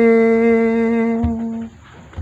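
A man's voice singing unaccompanied, holding one long steady note that stops about three-quarters of the way through, followed by a faint breath.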